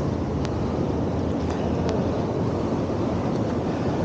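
Steady street noise of road traffic with wind rumbling on the microphone, with a couple of faint ticks.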